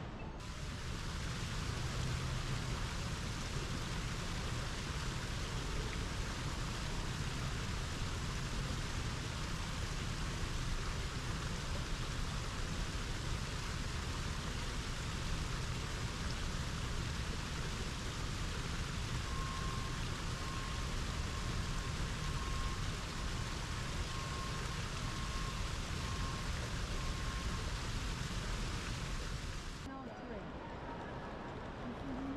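Small rock waterfall splashing steadily into a shallow pool: an even, unbroken rushing noise with a low rumble beneath it.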